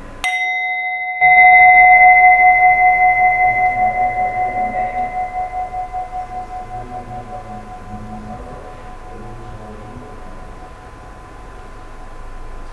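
Tibetan singing bowl struck once just after the start, ringing with a wavering, pulsing hum that slowly fades over about eight seconds. It is the signal that closes a guided meditation, the first of three strikes.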